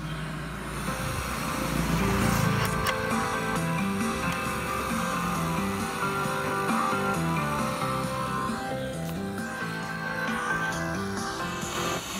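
Music from a radio broadcast playing through a Sony CFS-715S boombox's speakers, a melody of held notes, with a low rumble of the set being handled in the first couple of seconds.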